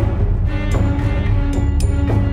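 Background soundtrack music: sustained tones over a heavy bass, with sharp percussive strikes.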